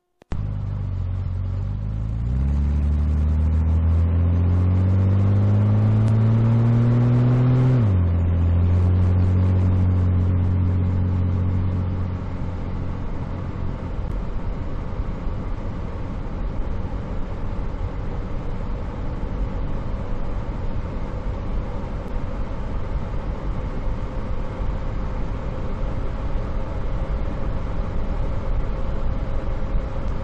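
1965 Chevrolet Corvair's air-cooled flat-six pulling away, its pitch climbing for about six seconds, then dropping suddenly about eight seconds in as the two-speed Powerglide automatic shifts up. The engine note then settles and fades under a steady rush of road and wind noise as the car cruises.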